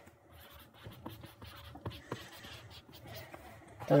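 Stylus writing on a tablet screen: faint scratching with many light, quick taps as an equation is written out.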